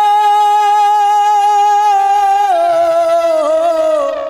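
A male singer holds one long note into the microphone as a devotional song opens. The note is steady for about two and a half seconds, then dips slightly in pitch and wavers near the end.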